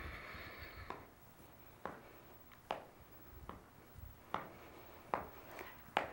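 Faint, evenly spaced taps, about one every 0.8 seconds, from feet coming down on the floor during seated alternating knee lifts.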